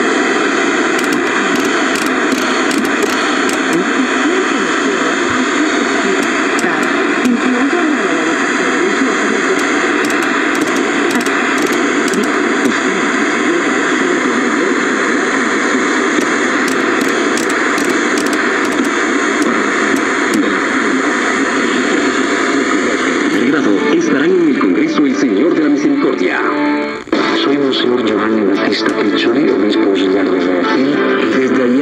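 Sound from a 1977 Zenith Chromacolor II portable TV's speaker: broadcast talk and music buried in static hiss, as the freshly cleaned rotary tuner is turned through the channels. The sound changes character about three-quarters of the way through and drops out for a moment near the end.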